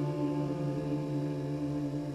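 Upright piano's final chord held on the sustain and slowly dying away, a steady ringing tone fading gradually with no new notes struck.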